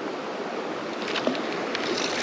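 Steady rushing of a shallow creek's flowing water, with a few faint knocks and rubs of handling near the end.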